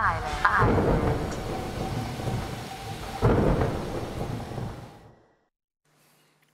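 Thunderstorm sound effect: rolling thunder over rain, swelling twice and then fading out to silence.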